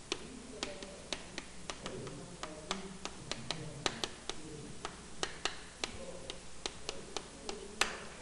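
Chalk clicking against a chalkboard while equations are written, a quick, irregular run of sharp taps, several a second.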